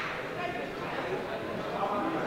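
Indistinct chatter of several voices in a gymnasium, with no one voice standing out.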